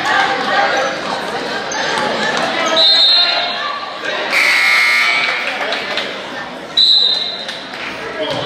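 Sounds of a basketball game in a school gym: players' and spectators' voices, short high squeaks, and one loud shrill blast about a second long just after the middle.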